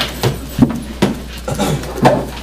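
A run of short knocks and rustles as papers and binders are handled and set down on a conference table, about one every third of a second, over a low room hum.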